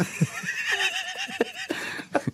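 Men laughing: one high-pitched laugh that wavers up and down in quick repeated pulses, over shorter, lower chuckles.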